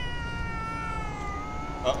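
Stray tabby cat yowling in one long, drawn-out call that slowly falls in pitch: a warning yowl in a standoff with another cat, a sign that a fight may break out.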